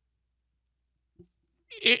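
Near silence, then a man's voice begins speaking near the end, its first word drawn out and rising in pitch.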